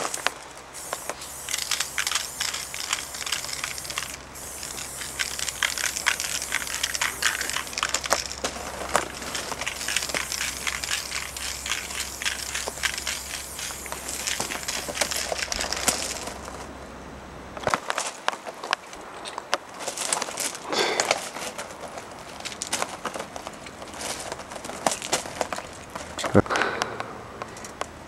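Aerosol spray can with a fat cap spraying chrome-silver paint in long hissing bursts, with a brief break about four seconds in and a longer pause a little past the middle.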